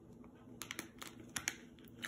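Faint, light clicks and taps of a plastic Lego minifigure and its stand being handled, with several small sharp clicks in the second half.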